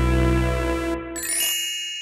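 Bouncy keyboard music ends about a second in. It is followed by a bright ding that rings out in several high, steady tones and slowly fades.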